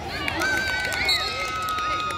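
Young people shouting and calling out in the open, with two long, high-pitched held calls, the second one lower, over a low background of crowd voices.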